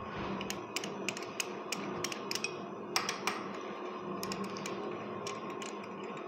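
Hex (Allen) key clicking and rattling in the cover bolts of a Yuken hydraulic vane pump as the bolts are loosened, giving irregular light metallic clicks, about two or three a second, over a faint steady hum.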